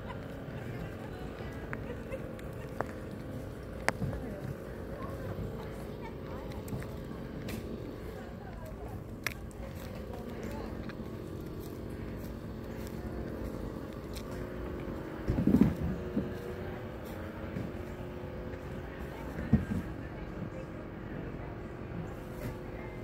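Outdoor ambience with a steady low hum and faint, indistinct voices. There are occasional light clicks, and two short louder low sounds come a little past the middle.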